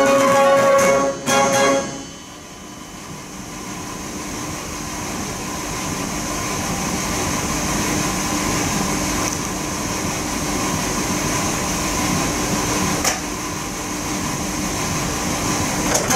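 A Mortier dance organ ends a tune with a last chord about two seconds in. After that there is a steady mechanical hum and hiss, typical of the organ's blower and wind supply running between tunes, with one sharp click near the end.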